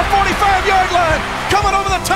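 Excited sports-broadcast play-by-play voice over background music with a steady beat.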